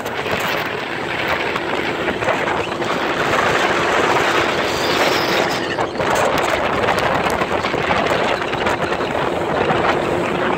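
Bass boat running steadily at speed on the water: outboard motor noise mixed with rushing water and wind buffeting the microphone.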